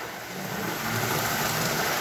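Model-train steam locomotive (a '300' with smoke unit) running on 20 volts with no body shell: a steady motor whir as its traction-tired drive wheels spin on the rails instead of pulling. Without the weight of the body it has too little traction. The whir picks up a little about a third of a second in.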